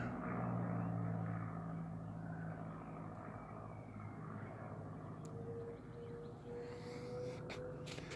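Light aircraft flying over at a distance: a steady low engine drone that fades over the first few seconds. A thin steady higher tone joins about five seconds in.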